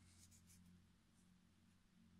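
Near silence: a faint low hum, with a few very faint scratchy rustles in the first second from yarn being worked with a crochet hook.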